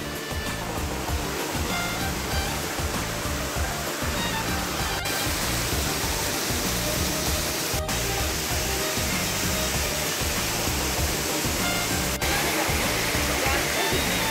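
Steady rushing of a waterfall and stream, with music playing faintly underneath.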